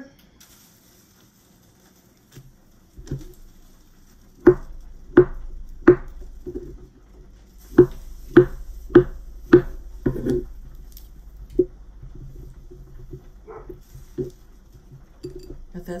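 Kitchen knife cutting up an avocado on a wooden cutting board: about nine sharp knocks of the blade, in two runs of roughly two a second, with softer handling sounds between.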